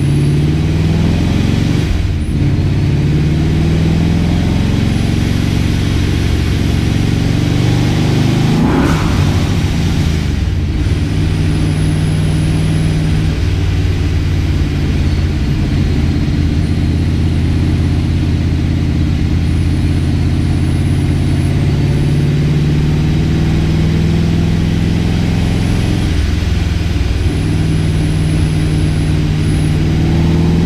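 Supercharged 572 cubic-inch big-block Chevy V8 in a Pontiac GTO, heard from inside the cabin, pulling under load through the gears of its six-speed manual. The engine note climbs, then drops back at each of a few gear changes.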